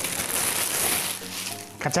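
Clear plastic packaging bag crinkling and rustling as a folded shirt is handled and pulled out of it, dying away about one and a half seconds in.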